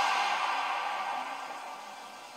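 Audio of a music video playing from a tablet or laptop speaker: a burst of hissing noise, with no low end, fading steadily away over about two seconds.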